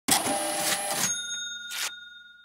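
Cash-register sound effect: about a second of loud, printer-like rattling, then a bell ding that keeps ringing as it fades, with a short burst of noise near the end.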